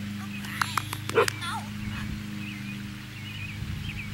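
Dog giving a quick burst of barks and yips about a second in, the last one loudest: the mother dog barking in protest at not getting treats. Birds chirp and a steady low hum run behind.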